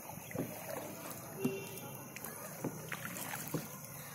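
Kayak paddling on a calm lake: faint water lapping and dripping from the paddle, with scattered light knocks.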